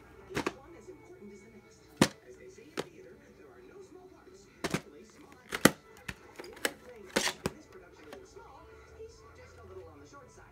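Sharp plastic clicks and snaps as a white plastic clamshell VHS case is handled, opened and the cassette taken out: about eight separate clicks, the loudest about two and five and a half seconds in. Faint television speech and music run underneath.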